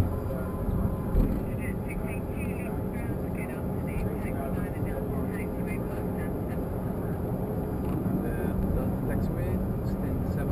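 Steady cabin noise in a Bombardier Challenger 605 cockpit on the ground after landing: the even hum of the idling jet engines and air system, with a low steady tone under it. A faint voice sounds in the background from about a second and a half in until about five seconds.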